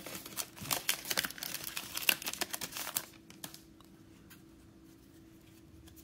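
Foil trading-card pack wrapper crinkling as it is torn open and handled, for about three seconds, then only faint rustles.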